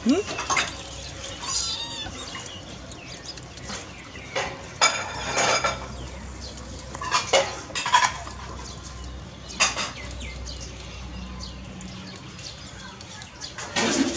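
Short, high-pitched animal calls, repeated several times at irregular intervals, with a few sharp clicks between them.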